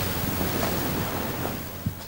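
Steady hiss of background noise from the location recording, slowly fading, with a single soft knock near the end.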